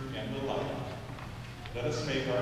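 A man's voice intoning a prayer, held notes ringing in the reverberant cathedral, over a low steady hum.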